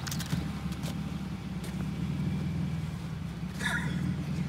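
An engine idling steadily with an even low hum.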